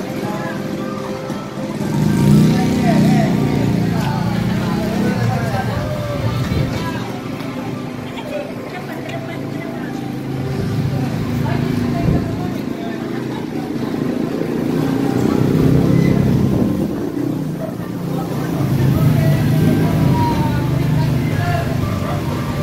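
Voices talking over car engines running at a petrol station forecourt, with music playing in the background. Low engine rumble swells and fades several times as cars move through.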